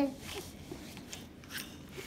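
A short laugh, then faint, scattered small clicks and rubbing from small objects being handled on a table.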